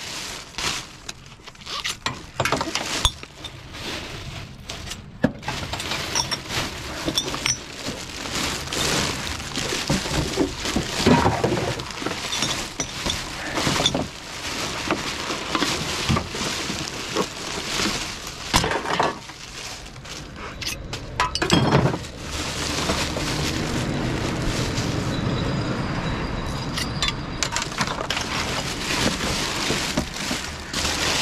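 Rubbish being sorted by hand in a bin liner: plastic bags and packaging rustling and crinkling, with repeated clinks and knocks of glass bottles and containers against each other.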